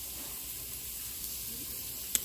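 Steady hiss of food sizzling in a pan on the stove.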